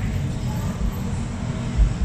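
Steady low background rumble, with a soft low thump near the end.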